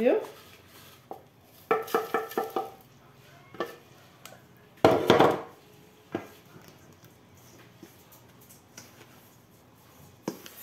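A plastic blender jar and silicone spatula knocking and scraping against a stainless steel mixing bowl as powdered salt is emptied into it: a few ringing clinks and taps, with one louder knock about five seconds in and quiet stretches between.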